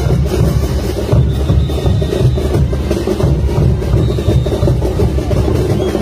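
Band music for a folkloric dance, with a bass drum and percussion keeping a steady beat.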